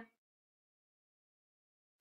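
Near silence: a pause between words, the speech tail just fading at the start.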